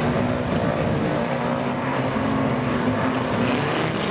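Engines of several banger-racing cars running and revving together, a steady blend of engine notes with the pitch drifting up and down.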